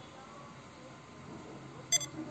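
A short, high electronic beep near the end: the computer's alert sound, triggered when the C program prints the \a (alert) escape sequence.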